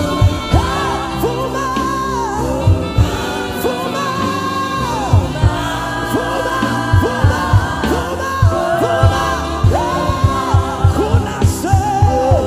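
Live gospel worship music: a male lead singer sings into a handheld microphone with women backing singers, over a band's steady drum beat. The drums drop out briefly about four seconds in, then the beat comes back.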